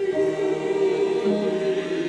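A mixed choir of men and women singing a hymn, holding long notes in harmony; a lower part moves to a new note a little past halfway.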